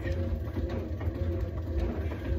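Elliptical trainer in use, a continuous low rumble from the machine.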